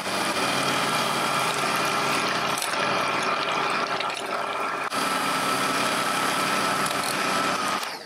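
Electric hand mixer running steadily, its wire beaters whisking a thin liquid batter against a glass bowl, with a steady whine from the motor. The sound dips for an instant about five seconds in and cuts off at the very end.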